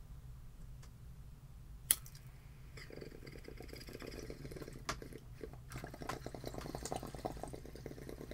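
A single sharp click about two seconds in, then a water pipe bubbling steadily as it is drawn on from about three seconds in, with a few more small clicks.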